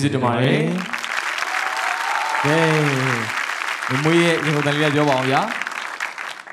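Studio audience applauding, starting suddenly and fading near the end, with a voice calling out over the clapping in short phrases.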